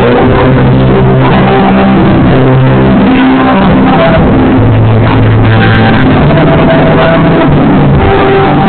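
A live band playing, recorded very loud and evenly, with long held low notes about a second in and again past the middle.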